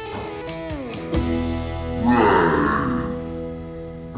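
Music led by an electric guitar, with sustained chords and notes sliding down in pitch in the first second.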